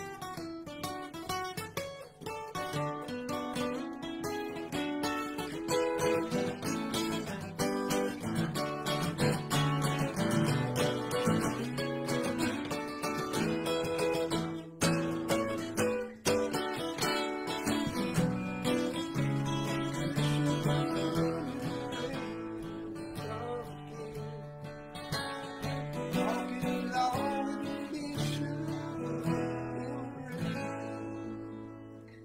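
Acoustic guitar played solo, strummed and picked chords in an instrumental passage without singing, briefly dropping out for a moment about halfway through.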